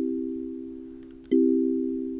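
Sonic Pi's kalimba synth playing a C major chord: C4, E4 and G4 starting together and fading. The chord sounds again just over a second in. The three play commands come out as one chord, not an arpeggio.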